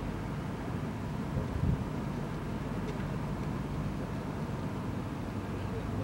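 Steady low rumble of outdoor background noise, with a brief low thump about a second and a half in.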